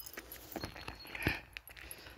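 Faint walking sounds on a dry, leaf-littered forest path: scattered light clicks and rustles, with a soft scuffing swell a little past the middle.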